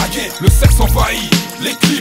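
Hip hop track: a French rap vocal over a beat with deep, sustained bass notes and sharp drum hits.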